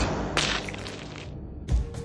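Dubbed sound effects for an animated entelodont thrashing its prey: a thump, a sharp swish about half a second in, then a deep thud near the end, over faint music.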